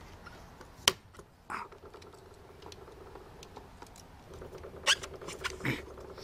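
Screwdriver working tight screws on a metal instrument case, with sharp metallic clicks about a second in and twice near the end, and a short scrape in between.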